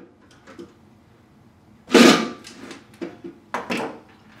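Hand tools and fixture parts handled on a wooden table: a few light clicks, then one loud knock about two seconds in and a quick couple more near the end.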